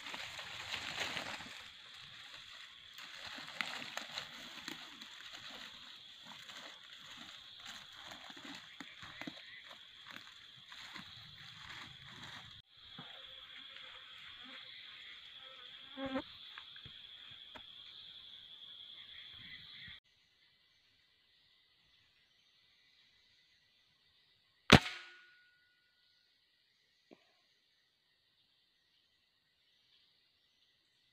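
Insects drone steadily at a high pitch over rustling in the undergrowth for the first two-thirds. Then the sound drops away, and about 25 s in a single sharp shot cracks out from the scoped hunting rifle, the loudest sound, dying away quickly.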